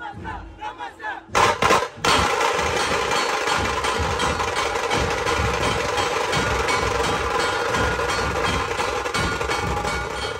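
A few shouts from the drummers, then about two seconds in a group of tasha drums strikes up all at once in a fast, dense roll, with deeper drum beats underneath.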